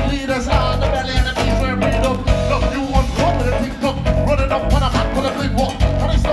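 Large live band playing an upbeat groove: drum kit, bass and guitars, with a wavering pitched lead line over the top.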